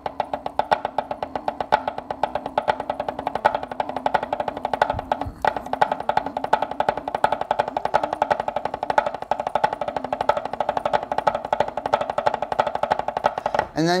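Drumsticks played on a wooden tabletop: a fast, even stream of strokes with regular louder accents, running through a drum rudiment sticking pattern.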